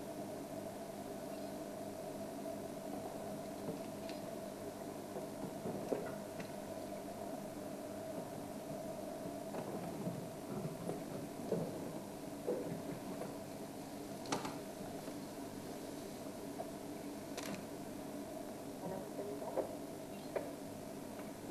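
African elephant feeding, its trunk tearing and pulling at dry grass: scattered snaps and rustles over a steady low hum.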